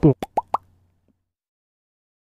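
Cartoon-like pop sound effects: a quick falling sweep, then three short pops in quick succession, the last two rising in pitch, each higher than the one before. They mark logos popping onto an end screen.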